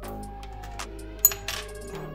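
Instrumental background music, with one sharp metallic clink a little over a second in, from the small metal parts of a bread-slicing guide being picked up.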